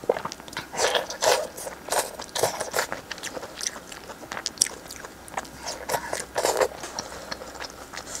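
Close-miked eating sounds: wet biting, chewing and smacking on soft food slick with chili oil, in irregular bursts, heaviest about a second in and again near six seconds.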